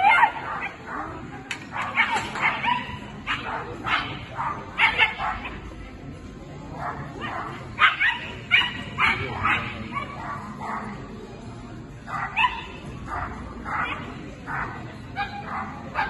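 Dog barking in short, sharp yaps, about two a second, with brief pauses partway through.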